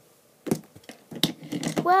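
Plastic rainbow loom clicking and clattering as it is picked up and shifted by hand, with a couple of sharp clicks about half a second and a second in. A girl's voice starts near the end.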